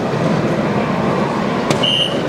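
A soft-tip dart hits the electronic dartboard with a sharp click near the end, followed at once by the board's short, high electronic beep registering a single 20, over steady hall noise.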